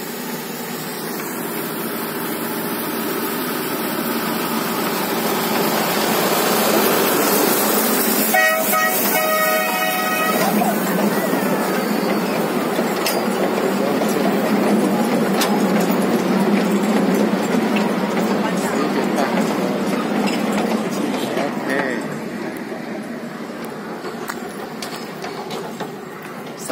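Taipingshan's small yellow narrow-gauge forest train (the Bong Bong train) approaching, passing close and moving away, its wheels and running gear rattling on the track, louder as it passes and fading near the end. About eight seconds in it sounds a steady horn for about two seconds.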